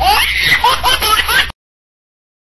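A man laughing loudly in repeated bursts, cut off suddenly about one and a half seconds in.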